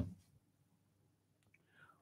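Near silence: room tone after the last of a spoken word, with a faint click and a brief soft sound about one and a half seconds in.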